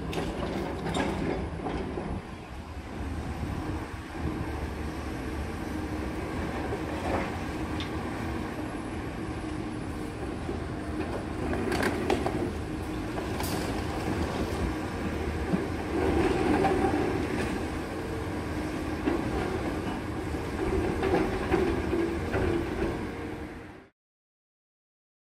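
Demolition machine working on a concrete building: a steady rumble from its engine and hydraulics, with creaks and irregular knocks of breaking concrete, the sharpest about twelve and thirteen seconds in.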